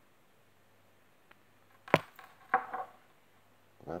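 A single sharp click about halfway through, then a softer clink half a second later: small metal fishing tackle being handled as a snap link is clipped onto a lure.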